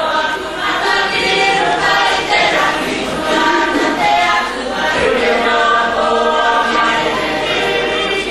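A group of voices singing a song together, choir-style, many voices on one melody line in long sung phrases.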